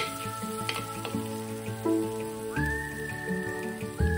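Background music of sustained notes that change every second or so, over a faint crackling sizzle of chopped garlic frying in oil in a clay pot.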